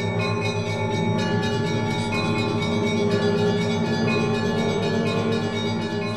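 Church bells ringing together in a peal, many pitches sounding at once and sustaining, with fresh strokes about once a second.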